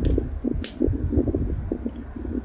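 Electric fan running, its air buffeting the microphone with a low, uneven rumble. A single short, crisp click a little past halfway.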